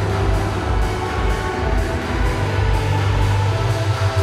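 Instrumental intro of an 80s-style italo disco / house dance track: held chords over a steady, pulsing bass, with no vocals yet.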